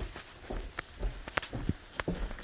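Footsteps going down carpeted stairs: soft, irregular thumps about every half second, with a few sharper clicks among them.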